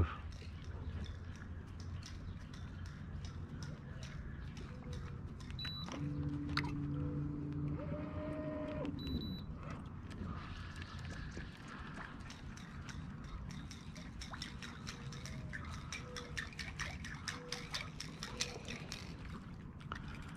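Remote-controlled electric kayak motor switched on and off: a short high beep, about two seconds of low hum that rises and then falls away, and a second beep. Faint scattered ticks sound around it.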